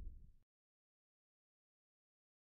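Near silence: the faint tail of a boom sound effect fades out in the first half second, then there is complete digital silence.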